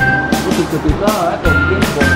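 Music with a steady beat and held electronic notes, with a voice heard over it for about a second in the middle.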